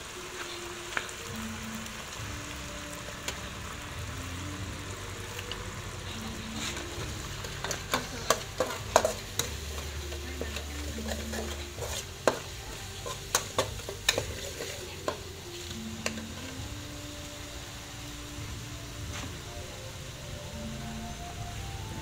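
Sauce sizzling as it fries in a steel wok over a gas burner. A metal spatula scrapes and knocks against the wok in a run of sharp clicks between about 8 and 15 seconds in.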